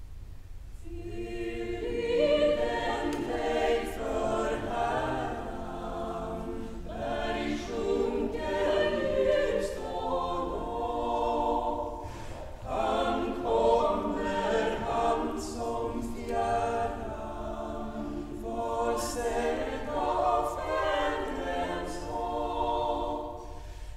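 A choir singing unaccompanied. The voices come in about a second in and sing in phrases, with a brief break for breath about halfway through.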